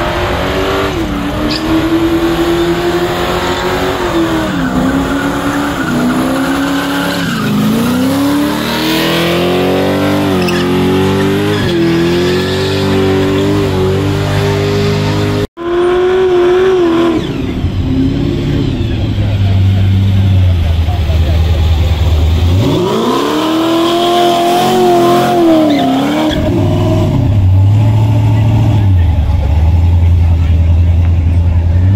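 Car engine revving hard and held at high revs with a wavering pitch during a burnout. After a sudden cut, a classic American car's engine blips up and down, revs up once more and falls, then runs at a low rumble as the car pulls away.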